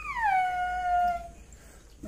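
A small girl's crying wail: one long high note that falls in pitch and then holds before trailing off.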